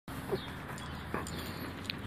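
Two short, faint barks from small dogs, nearly a second apart.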